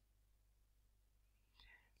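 Near silence: room tone, with a faint breath near the end.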